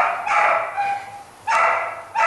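A dog barking three times, two barks close together at the start and a third about a second later.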